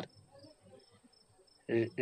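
A pause in speech filled by a faint, high-pitched chirping that repeats evenly several times a second, like an insect; speech begins again near the end.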